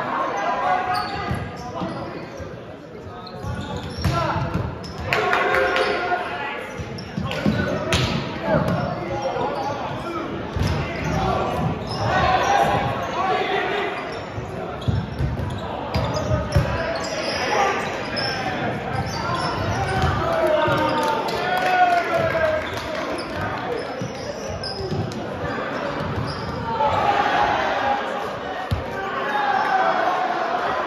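Volleyball rally in a large gym: the ball being struck, with sharp slaps and bounces, while players shout calls across the court, all echoing in the hall.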